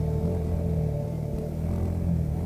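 Motorcycle engine running steadily while under way, with a faint music bed underneath.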